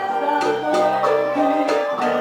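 Live band playing an instrumental passage: acoustic guitar and keyboard under a sustained woodwind melody.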